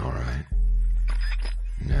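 A loud, steady low drone of electronic music or sound design comes in about half a second in, right after a short burst of sound.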